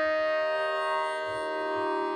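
Harmonium in a Hindustani classical solo, holding one long note steadily, its reeds sounding without a break.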